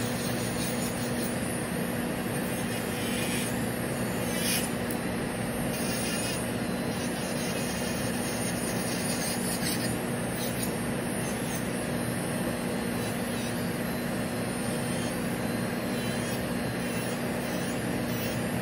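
Electric nail drill (e-file) running at a steady speed with a steady hum, its bit filing and shaping an acrylic nail.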